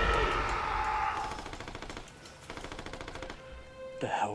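Rapid automatic rifle fire, heard distantly in two quick bursts, while a loud music swell fades away.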